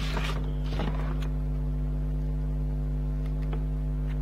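Steady electrical hum, with a few brief rustles of a paper sticker sheet being handled in the first second or so.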